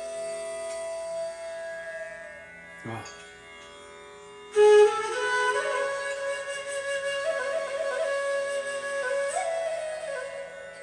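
Bansuri (Indian bamboo flute) playing a slow classical melody over a soft steady drone. A long held note fades out after about two seconds. A loud new phrase enters about four and a half seconds in, with sliding, ornamented notes.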